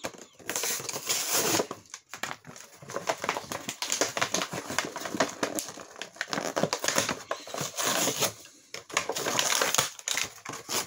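Clear plastic blister packaging and cardboard being torn and pried open by hand: dense, irregular crinkling and crackling with many sharp clicks, pausing briefly about two seconds in and again near the end.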